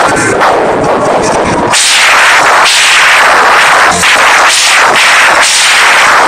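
Live rock band, with electric guitars, drums and vocals, playing very loud into a phone's microphone, which overloads and makes the sound harsh and distorted. The band is a little thinner for the first second or so and comes in full and pulsing about two seconds in.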